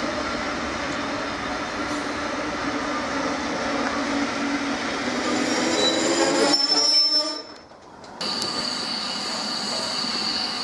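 Steam-hauled passenger train rolling slowly into the station under braking, its wheels and brakes giving a steady, layered squeal that grows louder until it breaks off suddenly about seven seconds in. About a second later a thinner, steady high squeal takes over.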